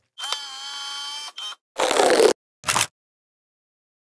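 Camera-themed intro sound effect: a held electronic tone for about a second, then three short shutter-like bursts, the middle one the longest and loudest.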